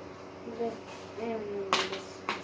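A single sharp click of hard plastic near the end, as 3D-printed blaster parts are handled and knocked together, over a faint low voice murmuring.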